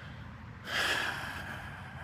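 A man sighing: one long breath out close to the microphone, starting about half a second in and fading over about a second.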